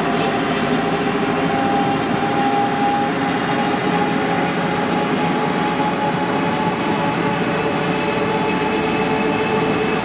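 Interior of a city transit bus driving at highway speed: steady engine and road noise with a few faint steady whining tones over it.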